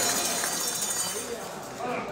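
Hand clapping and a light rattle fade out over the first second or so as an accordion song ends. After that, people's voices murmur in the background.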